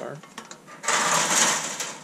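A thin sheet-metal bracket scraping and rattling against a steel body panel for about a second, a loud, harsh scrape that starts about a second in.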